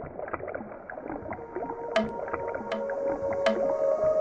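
Watery bubbling and gurgling sound effect full of small irregular pops. Music with held notes swells in from about halfway through.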